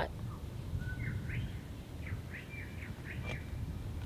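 Birds calling: a series of short, high chirping notes that glide up and down, starting about a second in, over a steady low rumble.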